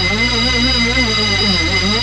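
Early-1990s techno in a beatless breakdown: a synth line wavering up and down in pitch several times a second over steady high held tones, with no drums.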